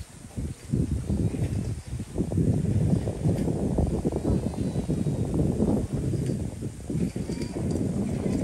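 Footsteps crunching on packed snow close to the microphone, a dense, uneven run of steps that starts about half a second in and keeps going.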